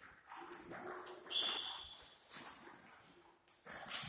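Table tennis balls tapping off bats and tables, a few sharp clicks about a second apart, one with a brief ring.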